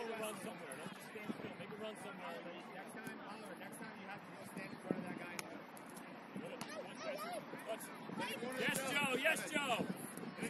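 Indistinct voices of players and people on the touchline calling and chattering across an outdoor soccer field, growing louder near the end. There is a single sharp knock about five seconds in.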